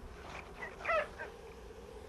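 Sled dogs yelping and whining: a few short, high calls, the loudest about a second in, over a faint steady hum.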